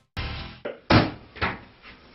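Wooden kitchen cupboards being rummaged through, with doors and items inside knocking. There are about five separate knocks, the loudest about a second in.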